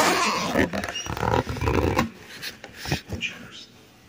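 A dog vocalizing close to the microphone, loudest in the first two seconds and then fading, with a few sharp knocks.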